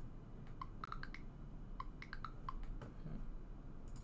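Computer keyboard keys being pressed while code is edited: an irregular run of about a dozen light clicks, most of them in the first two and a half seconds.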